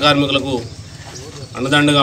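A man speaking, in two phrases with a short pause between them.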